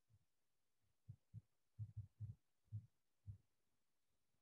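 Near silence, with about eight faint, short low thumps scattered irregularly through the middle.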